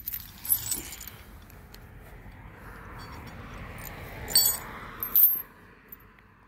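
Metal chain dog leash clinking and jingling in short bursts: once about half a second in, then twice more near the end.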